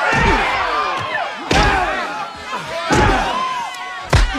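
Staged movie fist-fight sound effects: three heavy punch or body-slam thuds about a second and a half apart, over a crowd of many voices shouting and yelling.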